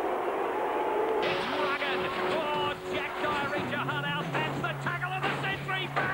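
Stadium crowd cheering a goal, cut off abruptly about a second in by music with voices over it.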